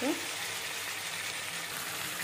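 Chicken pieces frying in oil and masala in an aluminium kadhai, a steady sizzle.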